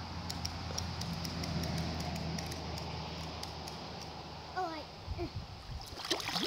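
Shallow river water rushing and rippling steadily, with light scattered clicks. A brief faint voice comes in about four and a half seconds in.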